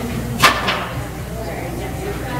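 A single sharp knock about half a second in, followed by a fainter one, over low murmured talk.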